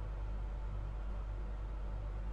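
Truma Aventa rooftop air conditioner running on cold, a steady low hum over an even rush of air.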